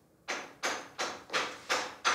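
Five knocks on a door in quick, even succession, about three a second.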